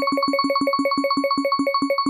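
Spinning prize-wheel sound effect: a rapid run of synthesized pitched ticks over a steady high tone, the ticks gradually slowing as the wheel loses speed.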